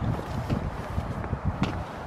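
Wind buffeting the camera microphone in an uneven low rumble, with a few footsteps on a wet path.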